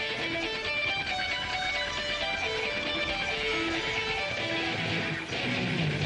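Stratocaster-style electric guitar playing a solo melodic intro, single notes held and stepping in a slow line. The rest of the band begins to come in with drum hits near the end.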